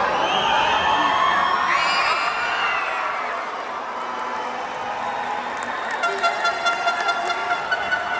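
Arena crowd cheering and shouting, with many high-pitched yells and whoops overlapping in the first few seconds. About six seconds in, a quick pulsing rhythm of about four beats a second starts, carrying a steady pitched tone.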